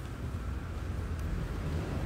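Low, steady rumble on a handheld phone's microphone, with no clear events over it.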